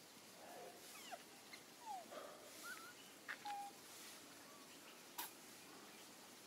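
Faint, short squeaky calls from macaques, several brief gliding coos and squeaks in the first few seconds, with a few sharp clicks.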